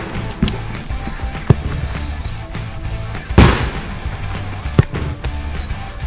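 Background music with a steady low beat, over which a football is struck hard about three and a half seconds in. Two shorter, sharper knocks of a ball come about a second and a half in and near five seconds.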